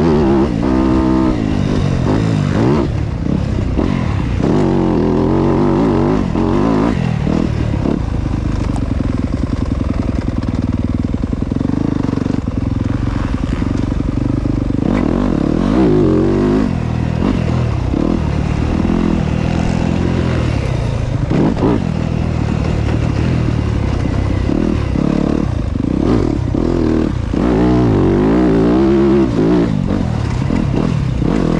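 Motocross bike engine ridden hard around a dirt track, its pitch repeatedly climbing and dropping as the throttle opens and closes through the gears. A few sharp knocks stand out over the engine.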